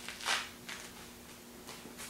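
Grapefruit rind being pulled off by hand: a soft tearing rustle about a third of a second in, with fainter ones near the middle and near the end.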